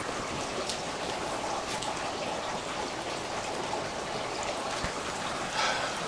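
Steady rain falling, an even hiss with faint scattered drop ticks.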